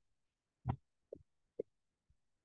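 Three short, soft thuds about half a second apart over near silence, from handling the computer's keyboard and mouse.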